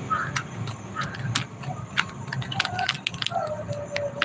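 Handling noise from a phone held close to its microphone: irregular sharp clicks and rustles as it is moved and gripped.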